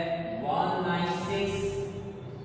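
A man's voice held in long, steady, sing-song tones, like chanting or humming, rather than ordinary speech.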